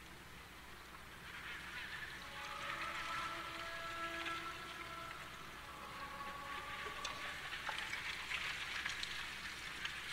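Faint ambient soundscape: several quiet sustained tones layered over a soft hiss, swelling a little after the first couple of seconds.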